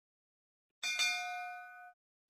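Notification-bell 'ding' sound effect of a YouTube subscribe animation: a single bright bell-like chime about a second in, ringing on for about a second before cutting off abruptly.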